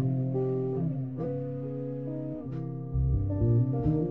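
Electric guitar and electric bass playing a slow blues together, with sustained, ringing guitar notes over a steady bass line.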